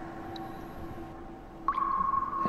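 Steady, held synthetic tones of a radio-drama sound-effect backdrop. A louder, higher tone enters sharply near the end.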